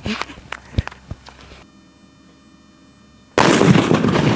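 A lit box firecracker goes off with a sudden, very loud blast about three and a half seconds in. The noise carries on and fades slowly rather than stopping at once.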